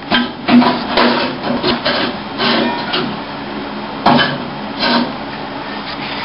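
A series of irregular scraping, rasping strokes, roughly two a second, from hand work on the race car's front end.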